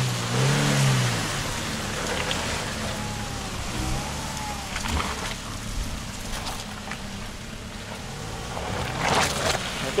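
Off-road vehicle engines running, with a steady hiss of noise, as the vehicles crawl along a muddy track.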